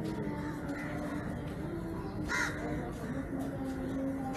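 A crow cawing once, loudly, about two and a half seconds in, over a steady background murmur.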